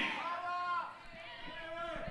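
A faint voice off the main microphone for under a second, then low room noise.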